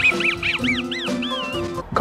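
The cartoon dog Muttley's wheezing snicker: a run of short, squeaky rising-and-falling wheezes, the last one drawn out. It plays over cartoon background music and stops just before the end.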